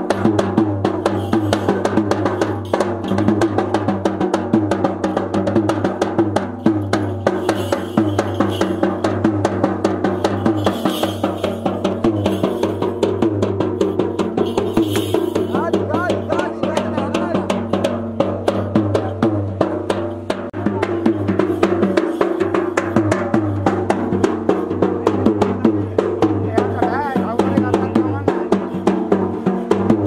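Traditional ritual drums played in a fast, continuous, steady beat, the strokes following each other closely throughout.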